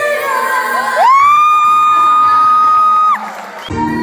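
Woman singing live into a microphone. About a second in, her voice slides up into one long, steady high note held for about two seconds. Near the end the recording cuts to louder, fuller music.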